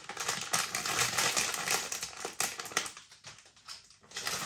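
Crinkly plastic snack packet of Bombay mix being pulled open: a dense crackling rustle that dies away to a few scattered ticks about three seconds in.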